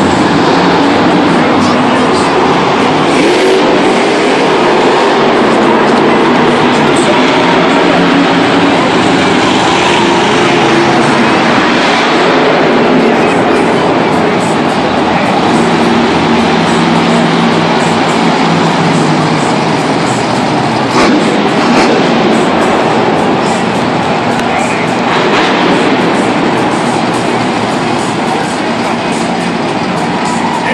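Monster truck engine running loud and revving in pitch as the truck drives the dirt arena floor, echoing through a domed stadium.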